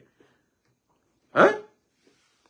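A man's voice: one short spoken interjection, "hein", falling in pitch, about a second and a half in, between pauses of near quiet.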